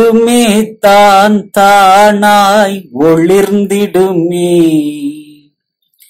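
A solo male voice singing a Tamil devotional song in a chant-like style, with no instruments. The phrases are held notes with vibrato, split by short breaths, and the last note is drawn out and fades about five and a half seconds in.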